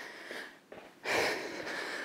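A woman breathing hard while exercising, between spoken cues: a faint breath, a brief near-silence, then a longer, louder breath from about a second in.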